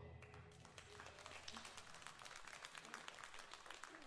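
Faint audience applause: many scattered hand claps, with the band's last chord dying away at the start.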